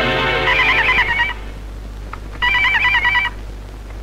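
Desk telephone ringing twice, each trilling ring lasting about a second with a short pause between. Background music fades out as the first ring begins.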